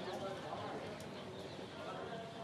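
A pause in a talk: faint room background with faint, indistinct voices, and one small click about halfway.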